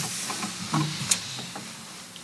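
The acoustic guitar's last sound dies away into a steady, fading hiss, with a few light clicks and knocks, the sharpest about a second in.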